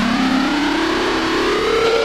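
Electronic dance music with a siren-like tone rising slowly in pitch throughout, over a hissing noise sweep.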